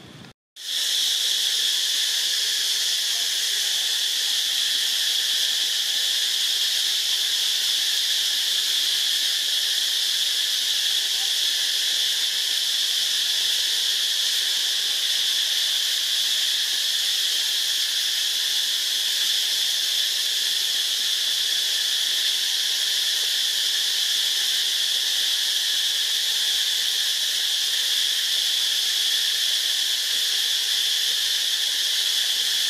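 A steady, fairly loud chorus of insects: a continuous high-pitched drone that does not let up. It cuts in abruptly about half a second in, after a moment of silence.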